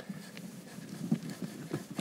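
A hand rummaging through damp sawdust packed with hazelnuts in a storage tub: soft, irregular rustling with small clicks of nuts knocking together.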